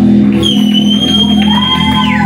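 Live electric guitar and bass holding a ringing final chord. About half a second in, a high, steady tone comes in over it and holds.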